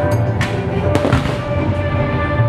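Fireworks going off, with two sharp bangs less than a second apart, over music with held tones and a steady low beat.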